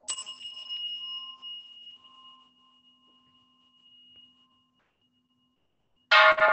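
A small Buddhist bell struck once, a clear high ringing tone that fades away over about four seconds.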